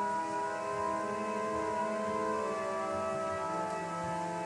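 Church organ playing slow, held chords that shift from one to the next every second or so: quiet music during the communion part of the Mass.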